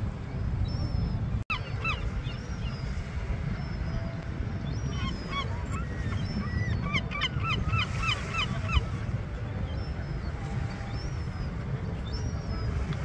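Seabirds, most likely gulls, calling in runs of short yelping calls that come thick and fast in the second half, over a steady low rumble. The sound cuts out for an instant about a second and a half in.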